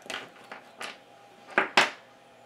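Diagonal side cutters snipping through a Cat5 Ethernet cable just below its RJ45 plug: a few faint clicks, then two sharp snaps close together near the end as the jaws cut through.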